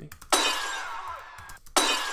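A glass-smash sound-effect sample from a beat, played twice, each hit starting suddenly, the second coming just as the first stops. An EQ low cut around 250 Hz has taken away all of its low end.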